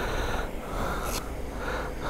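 A few heavy breaths close to a helmet-mounted microphone, along with the rustle of leather motorcycle gloves being pulled on.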